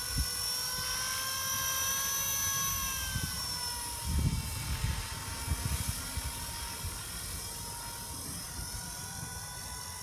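Blade 200 SR X electric RC helicopter flying: a steady high motor-and-rotor whine whose pitch drifts gently up and down, with a low rumble on the microphone about four to six seconds in.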